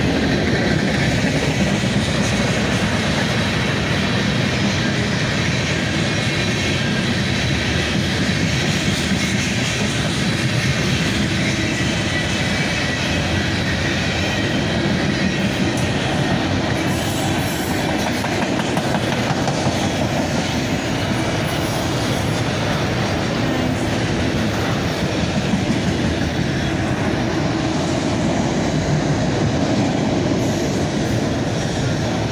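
Norfolk Southern manifest freight train's cars rolling past on the rails, a loud, steady noise throughout.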